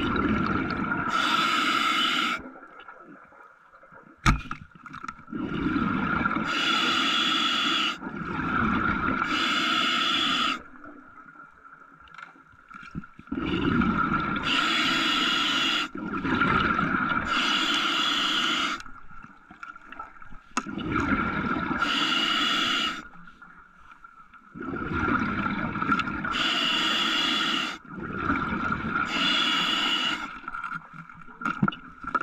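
A diver breathing slowly and heavily through a mouthpiece: about five breaths, each a couple of seconds of low rushing air followed by a brighter hiss, with quieter pauses between them. A faint steady whine runs underneath.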